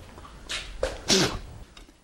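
A man's breathing sounds: a short hiss, a brief falling vocal grunt, then a sharp, loud puff of breath, like a forceful exhale or a blow.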